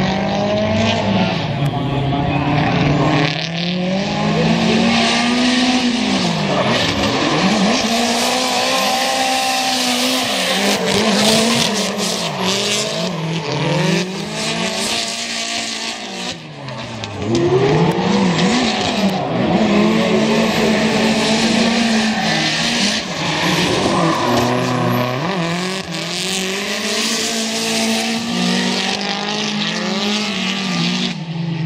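Two drift cars sliding in tandem, their engines revving up and falling back again and again as the drivers work the throttle, with tyres squealing and skidding throughout. There is a short lull in the engine note about halfway through before it picks up again.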